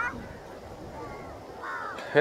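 A crow cawing briefly right at the start, then a low, steady outdoor background.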